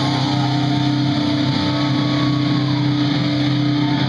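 Live rock band holding one steady, droning chord, with guitars and bass ringing out.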